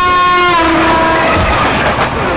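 Diesel locomotive horn sounding as the train passes, its pitch dropping about half a second in, over the train's running rumble.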